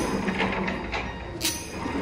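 Footsteps on pavement, a few irregular soft knocks, over a steady low hum.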